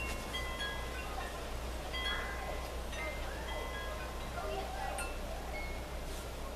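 Chimes ringing: scattered short high notes at different pitches, sounding at irregular moments, over a steady low hum.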